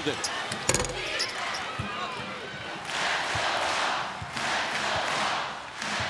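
A basketball being dribbled on a hardwood court, a series of short bounces, with arena crowd noise swelling from about halfway through.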